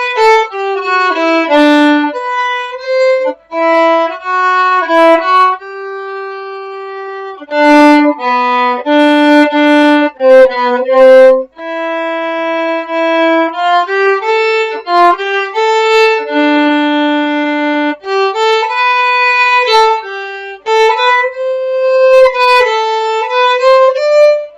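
Solo violin playing a melody in long bowed notes, one note at a time, with short breaks between phrases about three and eleven seconds in.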